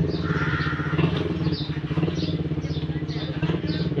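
Baby otter calling with short, high chirps, about two a second, over a steady low mechanical drone.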